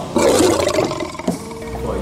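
A lion roaring once, a loud rough call lasting about a second near the start.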